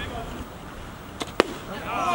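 A baseball pitch smacking into the catcher's mitt: one sharp pop a little under a second and a half in, just after a fainter click, over faint voices from players and spectators.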